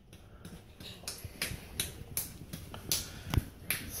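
A baby's palms patting a hardwood floor as he crawls: a string of sharp, irregular slaps, about two or three a second.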